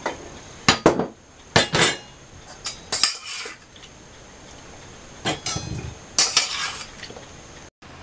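Metal spoon, stainless steel bowl, canning funnel and glass canning jars clinking and knocking as peach slices are spooned into a jar. The sound is a handful of separate clinks, some with a brief ringing tone.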